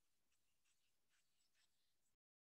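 Near silence: very faint hiss from a video-call audio feed, cut off abruptly by the call's noise gate just after the end.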